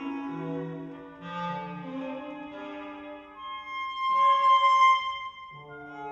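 Contemporary classical chamber ensemble music: slow, overlapping held notes. About four seconds in, a high sustained note swells to the loudest point, then gives way to a new quieter chord near the end.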